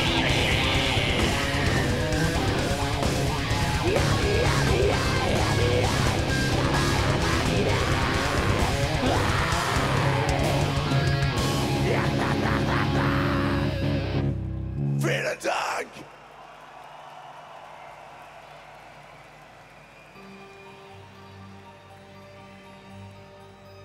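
Live metalcore band playing loud and dense, with distorted guitars, drums and vocals, then stopping abruptly about two-thirds of the way in. After a couple of brief sounds it drops to a much quieter stretch, with soft sustained keyboard tones entering near the end.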